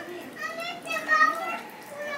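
High-pitched children's voices calling out in two bursts, about half a second and a second in.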